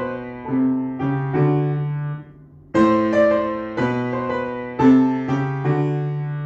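Upright piano playing a blues piece: chords struck and left to ring and fade, with a brief gap about two seconds in before the next phrase comes in strongly.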